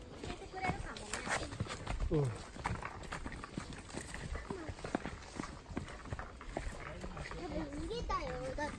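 Footsteps crunching on a dirt forest trail, many short irregular steps. Brief snatches of voices cut in now and then, the clearest a falling one about two seconds in.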